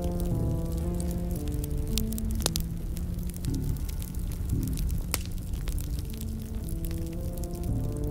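Background music of slow held notes that change every second or so, with scattered short crackles over it.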